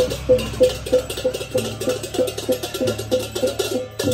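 Balinese gamelan playing for a barong procession: a metal gong-chime beats out a steady pulse of about three strokes a second over rapid cymbal clatter and a low sustained hum.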